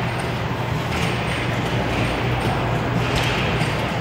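Steady background din of a large pinball arcade hall: an even wash of machine noise over a continuous low hum.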